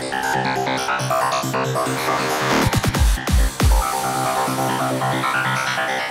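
Electronic trance music playing back from a production session: layered synth notes, with a short cluster of deep bass hits in the middle.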